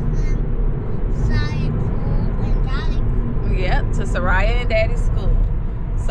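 Steady low road rumble inside a moving car's cabin, with short snatches of voices talking over it.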